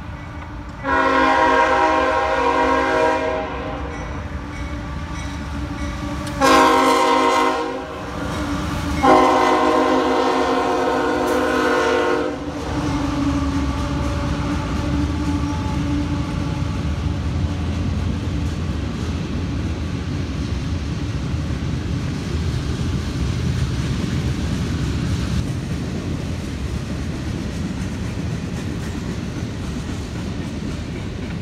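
CSX freight locomotive's air horn sounding three chords at a grade crossing: long, short, then long. After the horn stops, the freight train's diesel locomotive and cars rumble steadily past.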